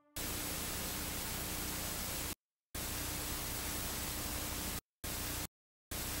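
Analogue TV static sound effect: an even hiss with a faint steady hum under it, cutting on and off suddenly in four bursts, the last two short.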